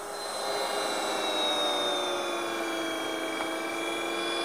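K-Tec Champ kitchen machine's electric motor running steadily, driving the pasta extruder as dough is plunged into the chute and fettuccine comes out of the die. Its whine sinks slightly in pitch over the first two seconds or so, then holds steady.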